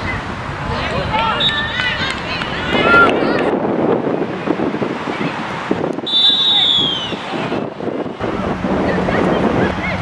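Women footballers shouting and calling to each other on the pitch, over a rushing noise of wind on the microphone. About six seconds in there is a high, falling call.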